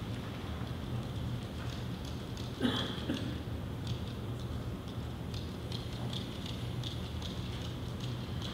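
Quiet hall room tone: a steady low hum with faint scattered clicks and rustles, and a brief murmur about two and a half seconds in.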